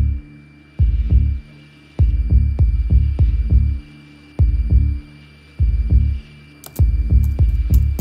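Sound-design score: deep bass thuds pulsing in an uneven, stop-start rhythm over a faint steady high-pitched hum.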